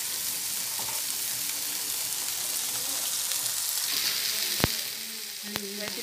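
Onion paste frying in hot oil in a pan: a steady sizzling hiss. Two sharp clicks come near the end.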